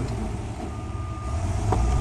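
A single high-pitched electronic beep of a vehicle's reversing alarm, lasting most of a second, over a steady low engine rumble. A couple of light clicks near the end come from the plastic tube fitting being handled.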